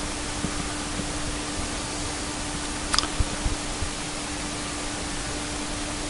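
CNC router spindle running a 3/8-inch compression spiral bit through a sheet, routing a dado: a steady noisy hiss with a steady hum under it. A brief click about three seconds in.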